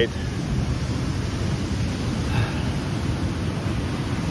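Steady rushing noise of surf on the beach mixed with wind buffeting the microphone.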